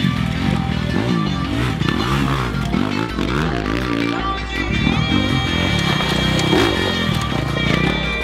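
Dirt bike engine revving up and down in quick repeated bursts as it picks through a rock garden, under background music.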